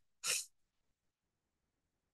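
A single short, breathy burst of the speaker's voice, heard over a video call, followed by gated near silence.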